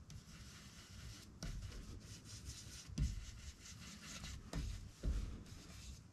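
Faint rubbing and scratching of an ink blending tool worked over a stencil on card stock, with a few soft taps along the way.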